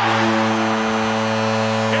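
Hockey arena goal horn sounding one steady, low, buzzing tone over a cheering crowd, signalling a home-team goal.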